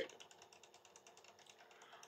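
Near silence: faint room tone in a pause between sentences.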